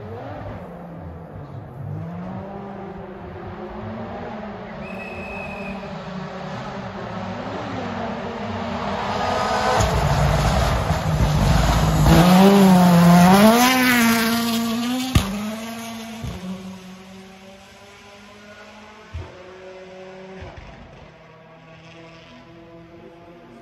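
Rally car on a gravel stage approaching at full throttle, its engine revving up and dropping back with each gear change. It grows loudest about two-thirds of the way in as it passes, then fades away. A single sharp crack sounds just after it passes.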